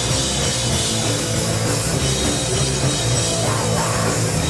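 Hardcore punk band playing live and loud: electric guitar and drum kit in a fast, dense wall of sound.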